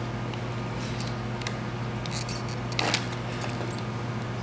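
Small clicks and handling noises of clear acrylic case pieces being pressed into place around an LED controller board, a few separate ticks with the sharpest nearly three seconds in, over a steady low hum.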